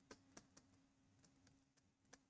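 Near silence with faint, irregular light clicks of a stylus tapping on a pen tablet as an equation is handwritten, over a faint steady hum.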